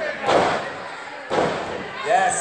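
Two heavy thuds on a wrestling ring's mat, about a second apart, echoing in a large hall, as a wrestler stomps down beside a downed opponent.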